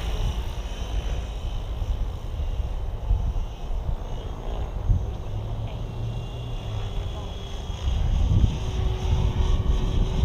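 Align T-Rex 760X electric RC helicopter in flight at a distance, a faint steady rotor and motor hum at low head speed, under heavy wind rumble on the microphone.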